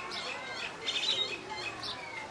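Several birds chirping and calling at once, a busy run of short overlapping chirps with some sliding notes.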